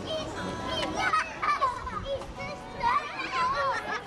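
Young children's voices, talking and calling out over one another in high-pitched bursts, with some adult chatter.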